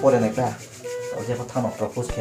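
A man's voice delivering spoken lines in Kaubru, in short phrases.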